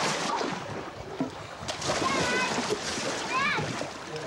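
Water splashing in a swimming pool as people swim and thrash about, with brief high-pitched voices calling out around the middle and near the end.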